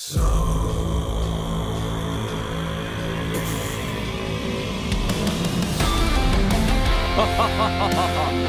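Heavy metal music with electric guitar starts abruptly at full loudness and grows louder about five seconds in.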